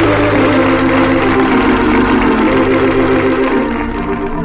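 Closing music of an old-time radio broadcast: sustained organ chords that change about a third of a second in and again near the end, growing softer toward the end.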